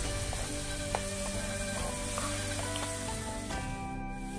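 Minced chicken frying in a wok, sizzling as it is stirred with a wooden spatula, with soft background music over it. The frying hiss drops away just before the end.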